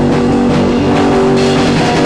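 Rock trio of guitar, bass and drums playing, with the guitar holding sustained notes, on a rough-sounding old tape recording.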